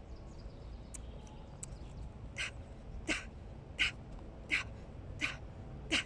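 A woman breathing out in short, sharp huffs while dancing, in a steady rhythm of about one every 0.7 seconds, starting a little over two seconds in.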